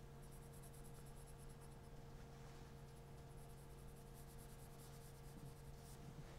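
Faint graphite pencil shading on paper: the side of the pencil rubbed quickly back and forth over the drawing, over a steady low hum.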